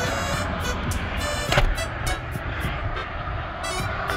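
Wind buffeting a phone's microphone, a steady rushing rumble, with music playing underneath.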